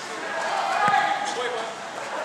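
Players' voices calling out during a futsal game, with a single thud of the ball being played about a second in.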